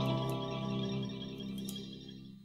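Final held chord of a brass fanfare band with banjo and sousaphone, ringing out and fading away, with a few faint clicks on top.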